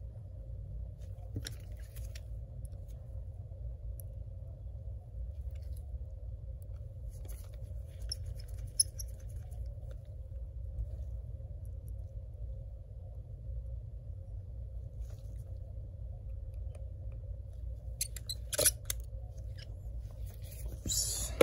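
Faint scattered clicks and scratches of gloved fingers working the small metal bracket and parts inside an open MacBook Air, over a steady low hum; one sharper click about nine seconds in and a short run of louder clicks near the end.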